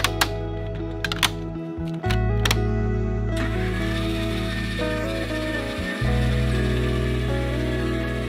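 Background music, with a few sharp plastic clicks in the first seconds as a plastic storage tote's lid latches are snapped shut. From about three seconds in, a steady motor hum from an RV's electric stabilizer jack retracting joins the music.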